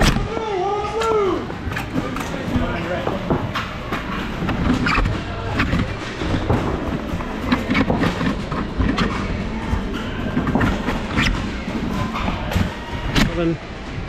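Scattered clicks and knocks of foam-blaster play and handling in an echoing indoor arena, over a steady background of voices.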